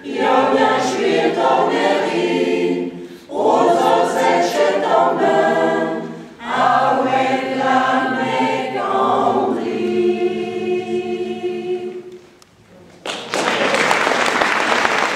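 A choir singing unaccompanied in several phrases, ending on a long held chord that dies away about twelve seconds in. Applause breaks out about a second later.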